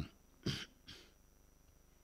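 A man coughing into a microphone: one short cough about half a second in and a fainter one just after.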